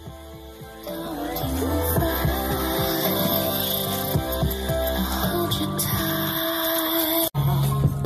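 Background music: a song that grows louder about a second in and breaks off for an instant near the end.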